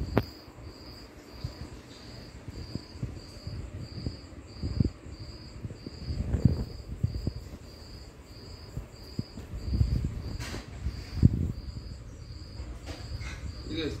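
A cotton t-shirt being handled and turned over, with soft rustling and bumps that peak a few times. Under it runs a steady high chirp repeating about twice a second.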